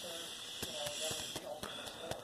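Trading cards and a clear plastic card sleeve being handled: a few soft clicks and light rustles over a faint steady hiss.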